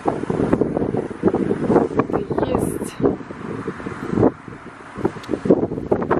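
Wind buffeting the microphone in irregular gusts.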